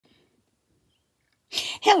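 Near silence for about a second and a half, then a woman's voice starts speaking, opening a greeting.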